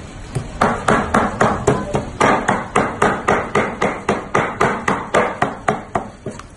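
A heavy cleaver chopping raw meat on a wooden chopping block in quick, even strokes, about four a second, with a brief pause about two seconds in: meat being hand-minced with the cleaver for kebab.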